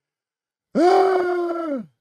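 A person's voice holding one drawn-out wordless sound for about a second, steady in pitch and dropping off at the end.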